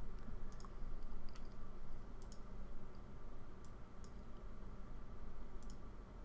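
Faint computer mouse clicks, a handful spread out, over a steady low background hum.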